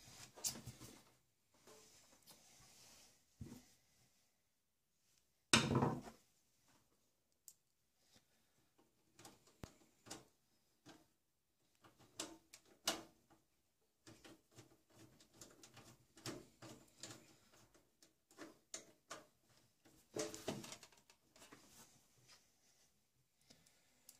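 A desktop PC tower's metal drive cage and case parts being handled and pressed into place by hand: scattered small clicks and rattles, with one louder clack about five and a half seconds in.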